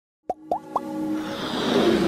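Synthesised intro sound effects for an animated logo: three quick pops, each rising in pitch, then a swell that grows louder, with held synth tones underneath.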